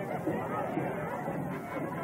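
Indistinct chatter of several people talking at once, with no clear words, running without a break.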